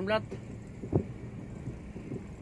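Cabin noise of a car moving slowly along an unpaved road: a steady low hum of engine and tyres, with one short knock about a second in.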